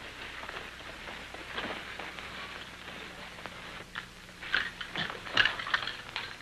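Steady hiss and crackle of an old film soundtrack, with a few short sharp knocks or taps in the last second and a half.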